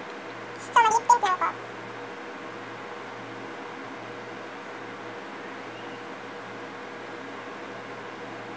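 A short high-pitched cry of a few wavering notes, about a second in, over a steady low hum.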